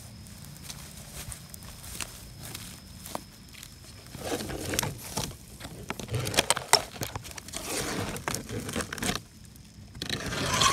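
Plastic sheeting and dry vegetation rustling and crackling as a perforated plastic sheet is handled and lifted off the ground. A few light clicks at first, then louder scraping and crinkling from about four seconds in until shortly before the end.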